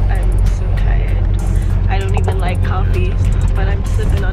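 Steady low rumble of a tour bus's engine and road noise heard inside the cabin, with a music beat playing over it.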